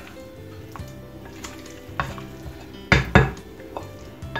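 A spoon stirring and folding chunky potato salad in a bowl: soft wet mixing with a few knocks of the spoon against the bowl, the loudest pair about three seconds in.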